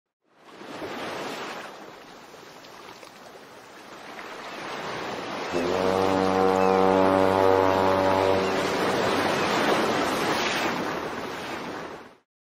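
Channel logo sting sound effect: a surf-like rush of noise that swells up, then a deep horn blast about halfway through that holds for a few seconds before the whole thing fades out.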